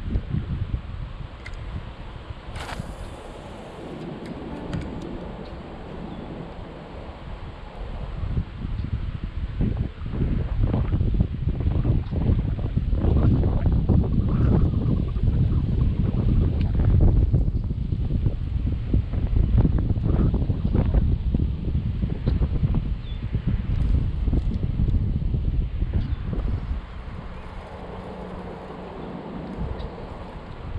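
Wind buffeting an action-camera microphone on a kayak bow: an uneven low rumble that gets louder and gustier through the middle and eases near the end.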